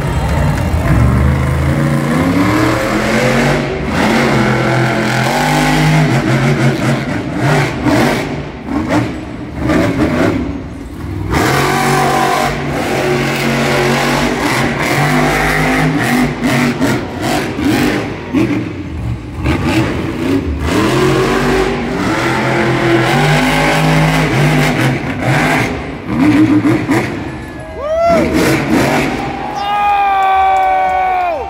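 Monster truck's supercharged V8 revving hard and dropping back again and again through a freestyle run, loud and echoing in an indoor arena. A spectator whoops about two-thirds of the way in.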